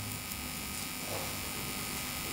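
Steady electrical hum and buzz from a live microphone and sound system, with no other sound standing out.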